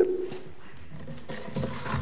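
A woman's voice ending a word, then a quiet pause in a reverberant room, with a faint, low, wavering voice sound near the end.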